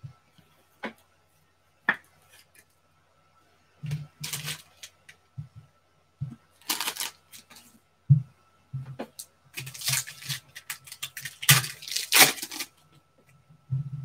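Foil trading-card packs of 2019 Panini Select Football being torn open and crinkled by hand, in several irregular bursts of crackling tearing and rustling. A couple of sharp taps come in the first two seconds.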